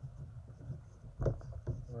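Hand-writing on a folded paper card: faint scratching strokes of the writing tip across the paper, with a few short taps between them.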